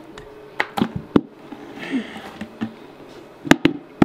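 Green plastic lid of a Knauf plaster bucket being prised off by hand: a run of sharp clicks and snaps as the rim comes free, three in the first second or so, then two loud ones about three and a half seconds in, with a short scrape between.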